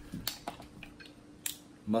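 A few sharp, scattered clicks of mussel shells being handled and pried apart, the loudest about one and a half seconds in.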